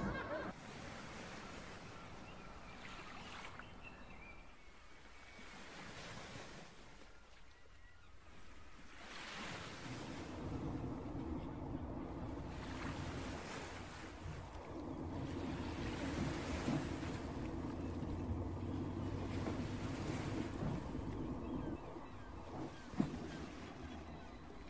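Soft wash of waves and wind, swelling and fading every few seconds, with a low steady hum joining about ten seconds in.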